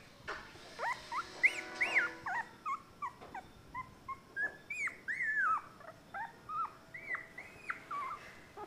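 A newborn puppy whimpering and squeaking: a run of short, high calls, each rising then falling in pitch, two or three a second.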